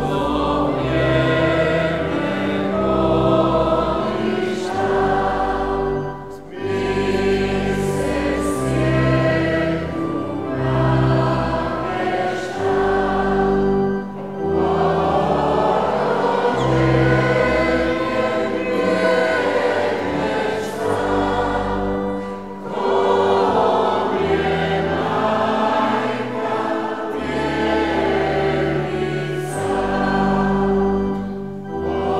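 Voices singing a church hymn together with organ accompaniment, held bass and chord notes under the melody, in phrases broken by short pauses about every eight seconds.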